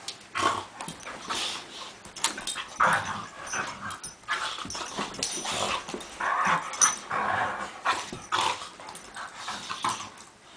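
Two dogs, a beagle mix and a pit bull, play-mouthing and licking at each other's faces: a continuous run of short, irregular breathy snuffles and mouth noises.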